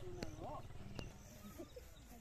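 Faint voices of women talking and exclaiming, with two sharp clicks, one just after the start and one about a second in, over a low steady rumble.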